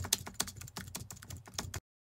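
A rapid run of irregular, typing-like clicks, about eight a second, added as an editing sound effect. It cuts off abruptly near the end.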